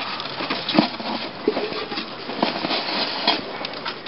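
Rustling of a hand moving through the fur and straw lining of a wooden rabbit nest box while handling newborn kits, with a few irregular soft clicks and knocks.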